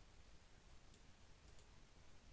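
Near silence: room tone, with three faint computer mouse clicks, one about a second in and two close together about half a second later.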